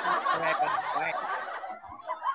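People laughing, the laughter dying down about one and a half seconds in.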